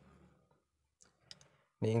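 Near silence broken by a few faint, short clicks about a second in; speech resumes just before the end.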